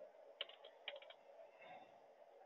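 Faint computer keyboard keystrokes: two short clusters of quick taps, about half a second and about a second in.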